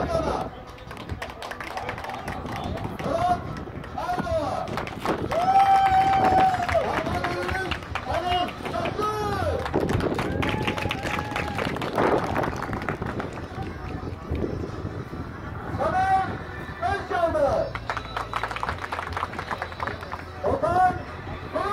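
A group of voices singing and calling out, with held notes and bursts of hand clapping around the middle.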